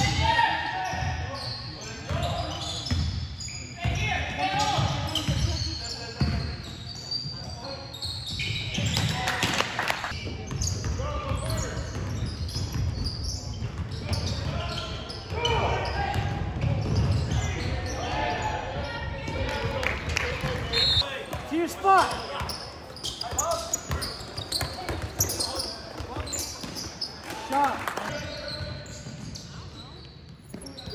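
Basketball game in a gymnasium: a ball bouncing on the court, with voices of players and spectators echoing around the hall.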